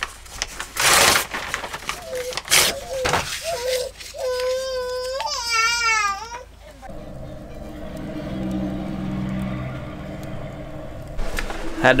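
Knocks and clatter of wood pieces being handled and set into a small wood stove. About four seconds in, a baby cries for about two seconds, rising and falling in pitch, followed by a steady low hum.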